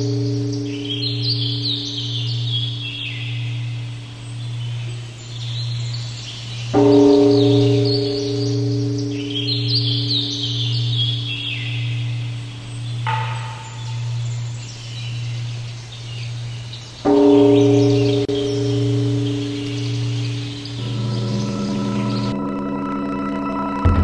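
A large temple bell rings with a deep, slowly pulsing hum. It is struck again about 7 seconds in and about 17 seconds in, each stroke dying away over several seconds, while birds chirp. Soft music comes in just before the end.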